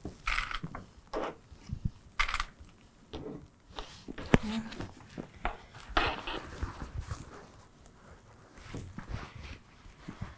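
Quilted fabric pouch lined with fusible fleece being folded and shaped by hand on a cutting mat: scattered soft fabric rustles and small knocks, with one sharp click about four seconds in.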